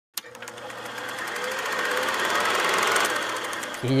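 Fast, even mechanical rattling, a rapid run of clicks that starts abruptly and grows louder over about three seconds, with a faint rising tone under it, then drops away: a sound effect used as a transition.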